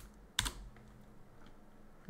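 Computer keyboard keystrokes: a faint tap at the start and a sharper, louder one just under half a second in, then only low room noise.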